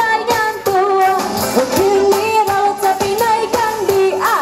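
A woman singing a song into a microphone, holding long wavering notes, over backing music with a steady beat.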